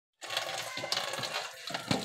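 Tap water running into a steel basin, with splashing and small clinks as clothes are washed in it by hand. There is a heavier knock near the end.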